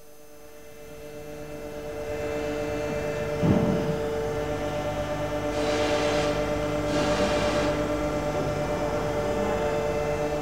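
Hydraulic power unit's electric-motor-driven pump running with a steady hum that builds up over the first two seconds. A short rough burst comes about three and a half seconds in, and two short hisses around six and seven seconds.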